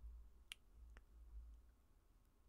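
Near silence: faint low hum with two faint short clicks, about half a second in and about a second in.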